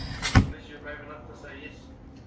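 A spatula knocking once, sharply, against the rim of a plastic mixing bowl, then scraping softly as it folds crushed Oreos into Swiss meringue buttercream.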